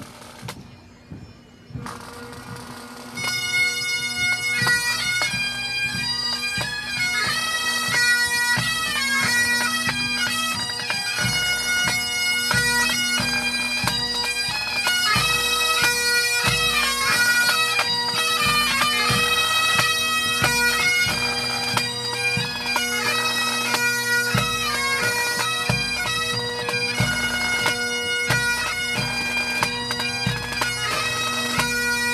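Pipe band of Highland bagpipes and drums striking up. The pipe drones come in about two seconds in and the chanters join a second later. The band then plays on with the steady drone under the chanter melody, over the beat of snare drums and a bass drum.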